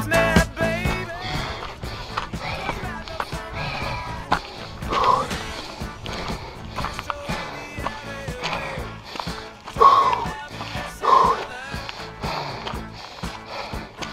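Background music with a bass line and a beat.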